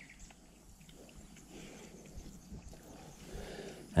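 Young pigs eating porridge at a feeder: faint chewing and snuffling, with a soft low grunt near the end.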